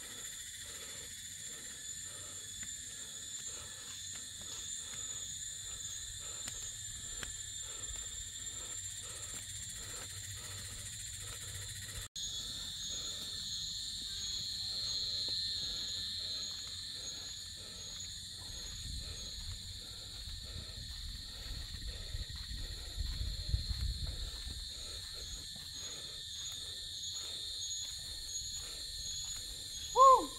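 Insects calling in a steady, high-pitched chorus with a faint pulsing beat, breaking off for an instant about twelve seconds in. A low rumble swells about two-thirds of the way through.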